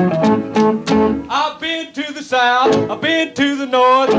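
Rockabilly song: picked guitar over a walking bass line, then a singer comes in about a second in and holds a note with wide vibrato.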